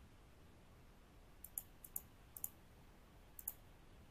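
Four pairs of faint, sharp clicks at a computer, from about a second and a half to three and a half seconds in, over near silence, as the presentation is moved on to the next slide.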